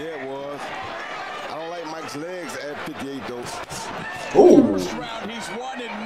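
A man's voice talking at a moderate level, with a short, much louder vocal burst about four and a half seconds in.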